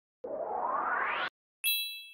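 Logo intro sound effect: a rising whoosh lasting about a second, then, after a short gap, a bright chime that rings and fades away.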